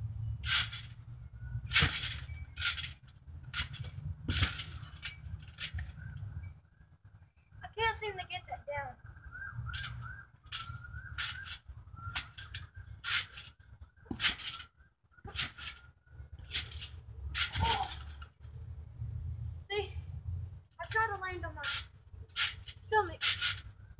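Trampoline springs and mat creaking and thudding under repeated jumps, about one bounce a second with a couple of short breaks, over wind rumbling on the phone's microphone. A few high, falling whine-like calls come about eight seconds in and again near the end.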